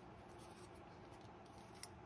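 Near silence: faint handling of a folding metal tripod, with one small click near the end.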